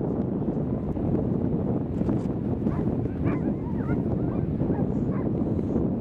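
Dogs whining and yipping in short rising and falling cries through the middle, over a steady rumble of wind on the microphone.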